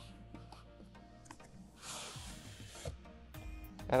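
Cardboard inner box of a microphone's retail packaging sliding out of its outer sleeve: a rubbing, scraping sound that starts about two seconds in and lasts about a second. Quiet background music plays underneath.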